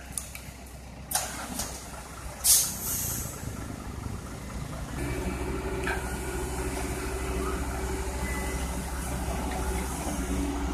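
Heavy diesel engines idling, with two short sharp air hisses in the first few seconds, like a truck's air brakes. From about halfway, the CAT 313D excavator's diesel engine runs louder and steady close by.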